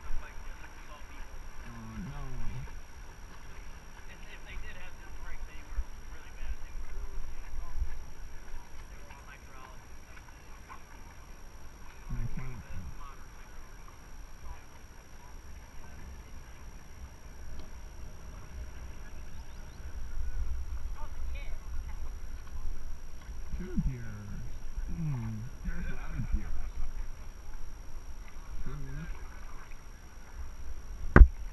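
Steady rush of river current through riffles around an inflatable whitewater raft, with a low rumble of wind on the microphone and a few short, low, muffled voices.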